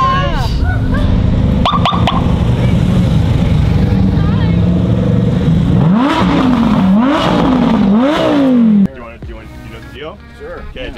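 Supercar engines running loudly as a convoy drives past. Several quick revs, each rising and then dropping sharply in pitch, come near the end before the sound cuts off abruptly.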